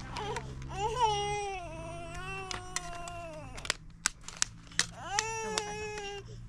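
Infant crying: a long wail of about three seconds, then a few sharp clicks, then a second wail near the end.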